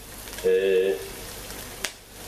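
Chopped onion and garlic frying in oil in a nonstick pan, a steady sizzle. About half a second in, a voice gives a short held 'uhh', and a single sharp click comes near the end.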